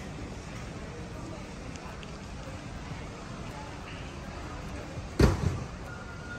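Steady background noise of a large warehouse store. About five seconds in there is a sudden loud thump, followed quickly by a smaller one.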